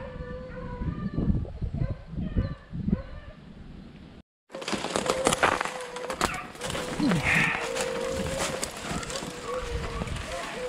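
Beagles baying in short broken calls while running a rabbit. After a brief dropout a little past four seconds, footsteps crunch and rustle through dry leaves and brush.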